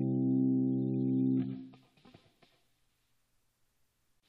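Background music: a held chord of steady tones that fades out about a second and a half in, leaving near silence.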